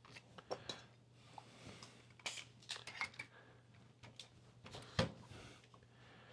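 Faint clicks, scrapes and light knocks of a screw-cap wine bottle being handled and a Coravin wine preserver being fitted onto it, with one louder knock about five seconds in.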